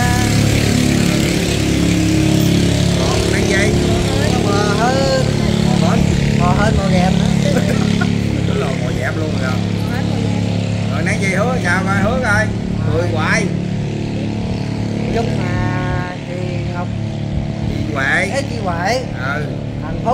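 A small motorcycle engine idling with a steady hum under talk, cutting out about sixteen seconds in.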